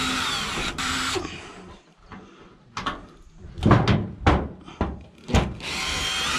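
A cordless drill-driver runs on the self-tapping roofing screws of a sheet-metal wall flashing on a metal-tile roof: one run for about the first second, another starting near the end. In between come several sharp knocks and rattles.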